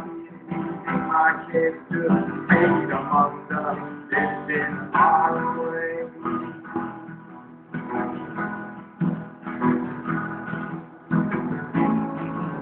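An acoustic guitar is strummed with a bass guitar underneath. A sung line comes about two seconds in, then the guitar and bass play on without voice.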